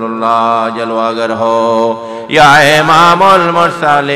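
A man's voice chanting a devotional naat in long, drawn-out held notes with a wavering pitch. A louder phrase starts about two seconds in.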